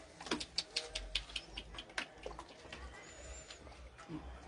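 A man sipping and gulping water from a plastic cup held to his mouth: a quick run of about a dozen wet clicks and slurps over roughly two seconds, then quieter.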